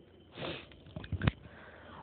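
A short sniff, a quick breath in through the nose, about half a second in, followed by a few faint clicks.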